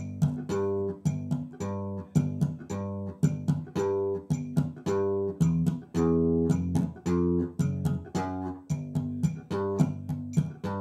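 Electric bass guitar played slap-style through a slap octave pattern: sharp, percussive notes jumping between low and higher octaves in a steady repeating rhythm.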